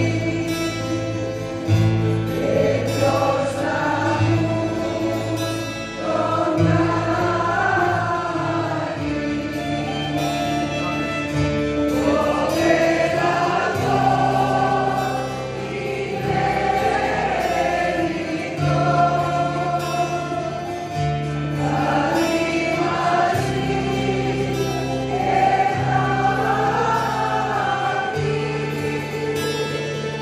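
Mixed choir singing a Greek song in unison-style melody, accompanied by bouzoukis, violin, accordions, guitars and bass, with the bass moving in long held notes under the voices.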